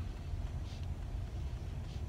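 Faint scratching of a wax crayon drawn across paper in a couple of short strokes over a steady low rumble.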